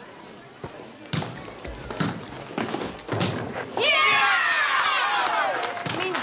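A basketball bouncing on a gym floor, a few hard thumps spread over the first three seconds. Then, about four seconds in, a voice breaks into a long, loud cheer that falls in pitch.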